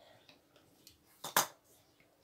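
Metal fluted pastry wheel working along puff pastry on a table, with faint scraping clicks and a sharp double clink of metal on the tabletop about a second and a quarter in.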